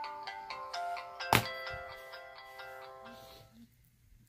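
A short electronic chime melody, like a phone's ringtone or start-up jingle: a run of clear notes that ring on together and fade away over about three seconds. One sharp click about a second in.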